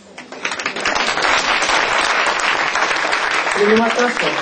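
Audience applauding: a dense patter of clapping swells up about half a second in and keeps going, with a voice breaking through briefly near the end.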